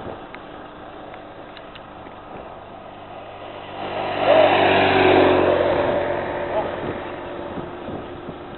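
A motorcycle passing close by. Its engine note swells about four seconds in, peaks for a second or so, then fades away.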